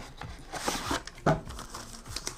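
Phone case in a plastic sleeve being slid out of a small cardboard box: a short scraping rustle about half a second in, then a light knock.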